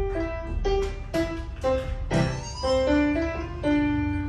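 A young student playing a simple piece on a digital piano: a melody of separate notes at a moderate, even pace over lower held notes, with one longer note sustained near the end.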